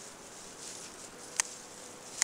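A sharp snip about one and a half seconds in as small red-handled scissors cut through mizuna stalks at the base. Under it runs a faint, steady high hiss of field insects.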